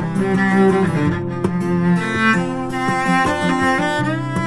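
Bowed cello playing an instrumental passage of a folk song, with sustained notes and no singing.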